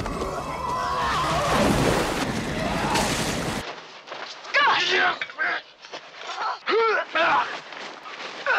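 Movie fight soundtrack: a loud, dense noisy scuffle for the first few seconds, then after a cut, a man's strained grunts and cries come in short bursts over the struggle.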